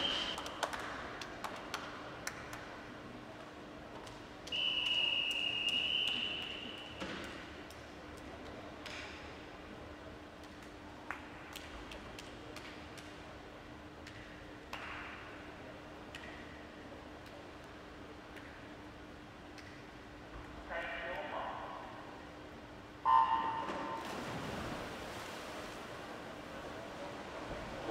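Swimming start sequence: a long steady whistle blast about five seconds in, calling the swimmers up onto the blocks. Near the end a brief call is followed by the loud electronic start beep, the loudest sound here, which sends the swimmers off their blocks. A faint steady hum runs underneath throughout.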